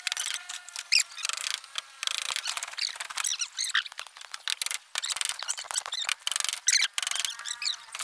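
Rapid knocks and clatter of a hammer and wooden planks on timber formwork, mixed with frequent high squeaks and chirps.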